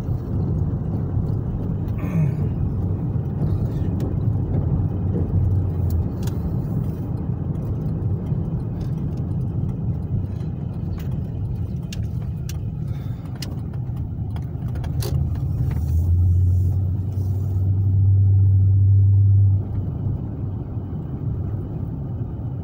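A car driving, heard from inside the cabin: a steady low rumble of engine and road noise, with a louder low drone swelling for a few seconds near the end.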